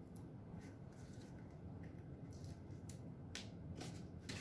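Faint handling of card stock, with a few brief crisp rustles as paper liners are peeled from strips of double-sided tear-and-tape on a card mat.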